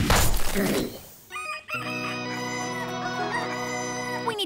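A wet, gushing spray sound effect for about the first second, then, after a short gap, a rooster crowing in one long, held call that rises at its start.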